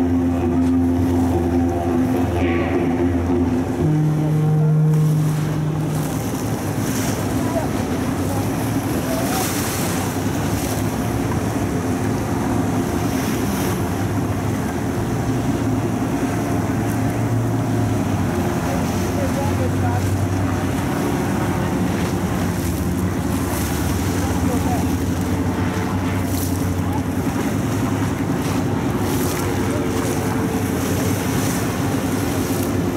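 Motorboat engines running, with water wash and wind on the microphone. About four seconds in, a low steady tone sounds for about a second.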